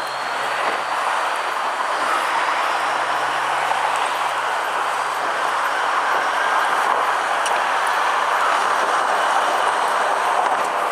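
Steady road and traffic noise heard from the open rear of a moving fire engine, with a faint low engine hum underneath.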